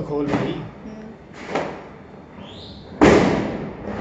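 A single loud, sudden thud or bang about three seconds in, fading over about a second, with a softer knock about a second and a half earlier.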